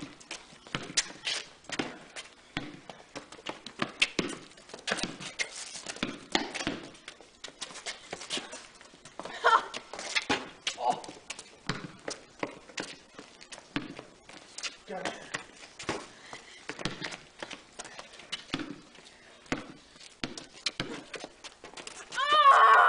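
A basketball dribbled on a concrete court, bouncing repeatedly at an uneven pace, with running footsteps on the concrete.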